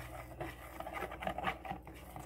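Faint scrapes and light taps of a wooden stir stick against a plastic measuring cup while melted clear melt-and-pour soap base is stirred, a little busier in the second half.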